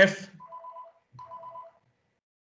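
A telephone ringtone, two short rings of a steady two-note tone heard faintly in the background, separated by a brief gap.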